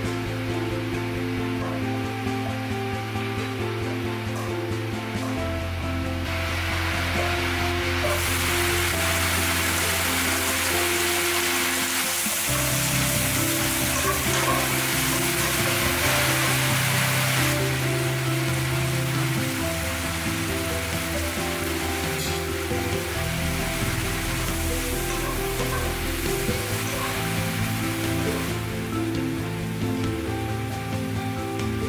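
Background music, with garlic and green beans sizzling in hot oil in a nonstick wok as they are stir-fried. The sizzle starts a few seconds in, is loudest through the middle, and eases off near the end.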